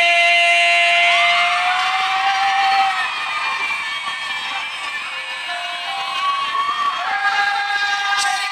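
A male singer holding a long, high final note over the backing music, which breaks off about three seconds in; a studio audience then cheers and shouts over the music.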